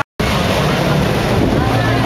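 A very short dropout to silence, then the steady low rumble of car and truck engines rolling slowly past, with crowd voices over it.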